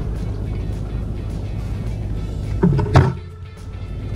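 Background music, with a loud knock about three seconds in, after which the sound dips briefly.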